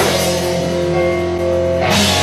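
A rock band playing live, with electric guitar, bass and drum kit holding sustained chords, and cymbal crashes at the start and again just before the end.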